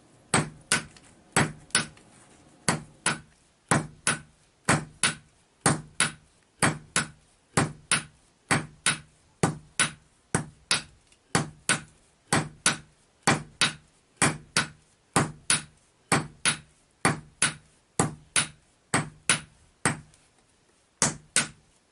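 Blacksmith's hammer striking a red-hot steel axe head on an anvil to forge the blade, each blow ringing briefly. The blows come about two a second in a steady rhythm, with a short pause in the first few seconds.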